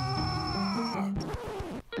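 A man's long, drawn-out scream of exasperation. It holds one pitch for about a second, then slides down and trails off shortly before the end, with light background music underneath.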